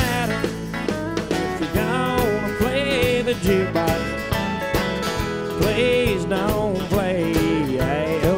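Country honky-tonk band playing an instrumental passage, with a lead melody of bent, sliding notes over a steady beat.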